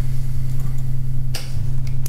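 Steady low electrical hum through the meeting room's microphone system, with one brief rustling noise about a second and a half in.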